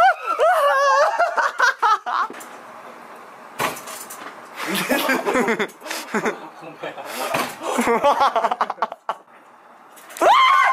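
A man's loud startled cry, with no words in it, followed by bursts of excited voices.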